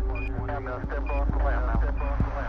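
Background music with a steady low beat and a melodic line that bends up and down in pitch.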